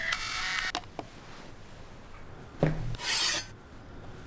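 A clock radio's alarm sound is cut off by a press on its button, with a click less than a second in. Later there is a thump, then a short rasping noise.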